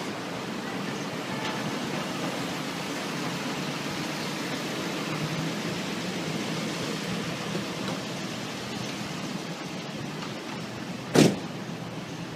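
A large box-body ambulance's engine running as it creeps past in slow street traffic, a steady rumble with no siren. A single short, sharp bang about eleven seconds in is the loudest sound.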